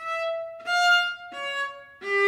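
Solo viola playing three separate bowed notes slowly, each held about two-thirds of a second. The second note is a step above the first, and the third drops lower.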